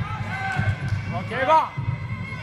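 A voice shouts loudly about one and a half seconds in, over a steady run of low thuds, about four a second.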